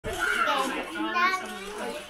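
A person's voice talking, the words unclear.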